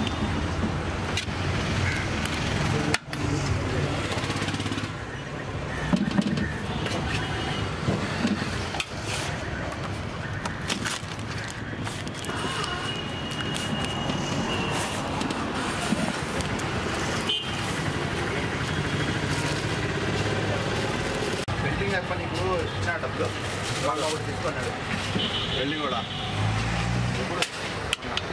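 Busy roadside food-stall din: steady traffic noise and background voices, with scattered clicks and knocks of a serving spoon against the aluminium rice pot and foil takeaway trays.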